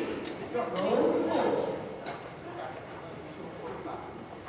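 Several horses walking on the footing of an indoor riding hall, their hoofbeats and a few sharp clicks heard under a voice talking during the first second and a half.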